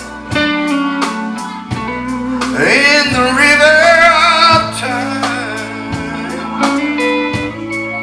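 Live band music with bass, drums and guitar under a male singer holding long, wavering notes.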